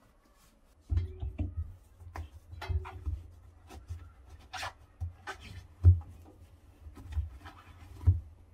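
A cloth rubbing and scrubbing over an LG Tromm front-loading washing machine's rubber door gasket to wipe it dry. Irregular strokes start about a second in, with dull knocks against the machine and a couple of brief squeaks of cloth on rubber.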